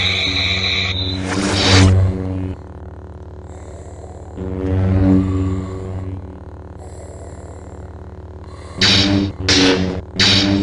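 Lightsaber sound effects: a steady low electric hum that swells as a blade swings, with bursts of blade clashes about a second in and a quick run of clashes near the end.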